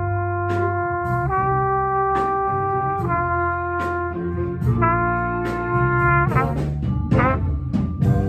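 High school jazz band playing a slow ballad: the brass hold long chords that change about every two seconds, with a trumpet right beside the microphone, over a low bass line and a steady beat. Near the end the horns slide through a quick run of bending notes.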